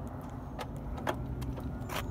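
A few light clicks over a low steady rumble as someone gets into a parked car.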